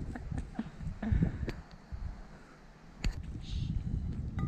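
Gusty wind buffeting the microphone, with a few knocks, for about two seconds; then a sharp click, and a short whispered "shh" near the end.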